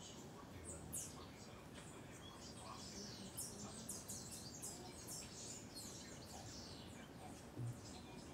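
Small birds chirping: many short, high-pitched, downward-sweeping chirps, thickest in the middle, over a faint steady background hiss. A brief low thump near the end.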